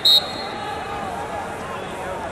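A referee's whistle blown once, short and shrill, right at the start, signalling the wrestlers to resume the bout; background voices carry on after it.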